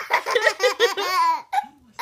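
A 17-month-old toddler laughing: a quick run of short laughs lasting about a second and a half, then a fresh laugh starting near the end.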